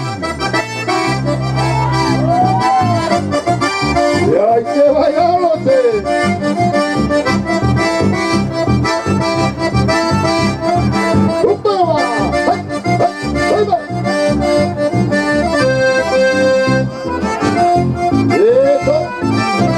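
Chamamé played by a small band: a piano accordion leads the melody over electric bass and guitar in a steady dance rhythm.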